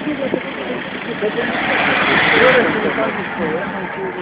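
Many people talking at once in a crowd, with a hiss that swells and fades about two seconds in.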